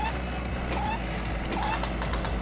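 A low, steady mechanical rumble, like a machine sound effect, under background electronic music, with a few short high chirps.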